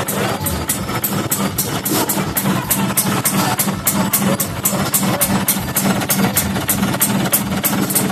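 Honda HD3 motorcycle idling steadily through an aftermarket exhaust pipe, with background music with a steady beat over it.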